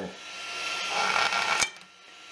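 A freshly printed PLA part scraping across and being lifted off an aluminium 3D-printer bed, a rubbing, scraping noise that ends in a sharp click.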